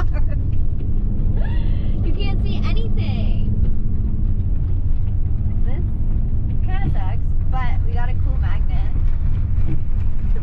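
Steady low rumble of engine and road noise heard inside the cab of a Ram ProMaster camper van under way.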